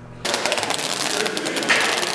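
Velcro strap of a weighted vest being pulled open or pressed shut: a dense crackling rasp that starts abruptly and lasts about two seconds, loudest near the end.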